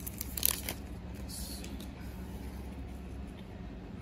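Trading-card pack wrapper crinkling and tearing open, in two short crackly bursts within the first second and a half, followed by quiet handling.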